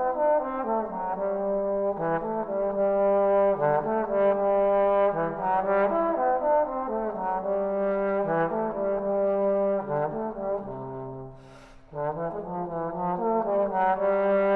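Solo Edwards T350HB tenor trombone playing a lyrical, legato etude melody unaccompanied, one connected line moving from note to note. A quick breath is heard near the end, between phrases.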